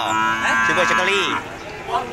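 A cow mooing once, a long steady call of over a second, with men talking over it.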